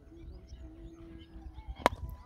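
A cricket bat striking a leather cricket ball: one sharp crack near the end, over faint outdoor background.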